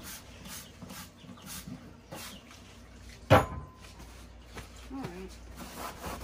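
Gloved hand wiping the inside of a window air conditioner's plastic housing with a paper towel: faint, irregular rubbing strokes, and one sharp knock a little over three seconds in.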